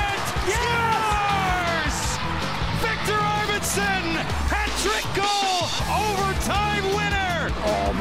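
Highlight-package background music with a steady beat, under a hockey commentator's excited, drawn-out shouting at an overtime goal. The bass of the music drops out briefly about five seconds in.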